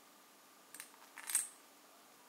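Light clinks of chopped candied walnuts moved against a metal pot: a short tick, then a brighter clink about half a second later.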